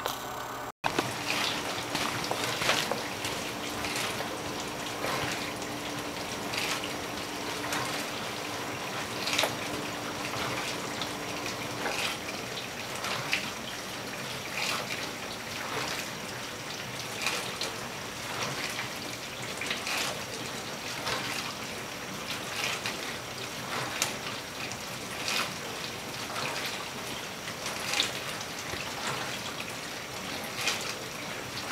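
Rubber-soled sneakers shuffling and scuffing on a tile floor as the wearer shifts and turns his feet: short soft scuffs about once a second over a steady hiss.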